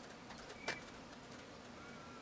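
Faint outback ambience of insects buzzing, with one sharp click under a second in and a short, faint bird note near the end.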